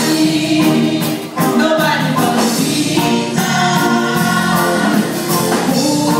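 Gospel choir singing with instrumental accompaniment and regular percussion strokes keeping a steady beat.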